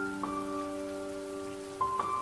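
Calm piano music: slow, sustained notes ringing on, with a new note struck about a quarter second in and another near the end.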